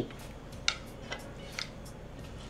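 A fork clicking lightly against a plate three times, about half a second apart, as a piece of pancake is cut and picked up.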